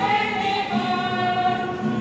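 A congregation singing a hymn together in a group, with long held notes.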